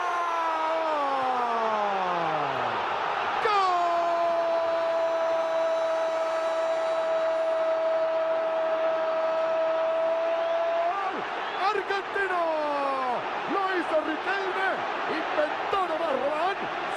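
Football commentator's goal call for a left-footed goal. A falling shout, then one long "gol" held on a single note for about seven seconds, then more short excited shouts, over steady stadium crowd noise.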